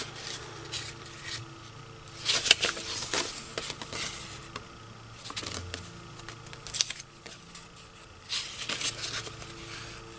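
Old paper sheets rustling and crackling as they are picked up, flipped and set down by hand, in several short bursts, the loudest about two and a half seconds in.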